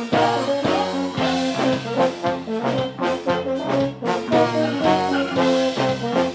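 Live band music led by brass: a trombone and an upright valved brass horn playing a melodic line over electric guitar.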